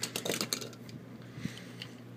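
Light clicks and clinks of small die-cast toy cars and their packaging being handled: several quick ones in the first half second, then a few scattered ticks, over a faint steady hum.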